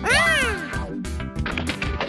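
A short cartoon cry that swoops up in pitch and falls away within about half a second, over background music.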